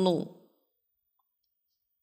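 A man's speaking voice ends a moment in, then the audio drops to near silence for the rest of the pause.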